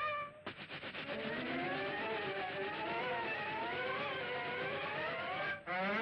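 A cartoon sound effect from an early black-and-white cartoon soundtrack. It is a dense buzzing rattle overlaid with several wavering, warbling pitches. It starts about half a second in and cuts off abruptly just before the end.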